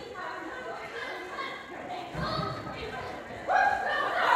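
A dog barking as it runs an agility course, mixed with called-out voices that echo in a large hall. A louder call starts shortly before the end.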